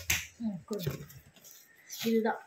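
A single sharp click at the very start, followed by a few brief, soft sounds from a woman's voice.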